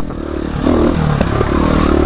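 KTM 350 EXC-F dirt bike's single-cylinder four-stroke engine lugging at low revs in a tall gear, geared down by a smaller countershaft sprocket, with some clatter from the bike over the trail.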